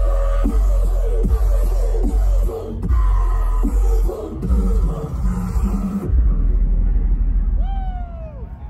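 Loud dubstep DJ set played over a festival sound system and recorded from the crowd, with heavy low bass and a choppy, stuttering rhythm. About six seconds in the sound turns duller as the high end drops away.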